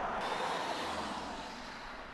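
SUVs driving past on a paved road, their tyre and engine noise slowly fading.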